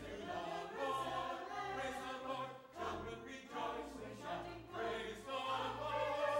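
A mixed church choir singing, with steady low notes held underneath and a short break between phrases about two and a half seconds in.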